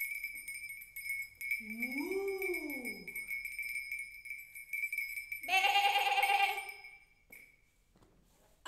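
Farm-animal calls like a sheep's bleating: one call that rises and falls in pitch, then a louder, wavering bleat about five and a half seconds in. A steady high whistle-like tone runs under both.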